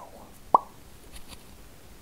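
A single short pop about half a second in, otherwise faint room hiss.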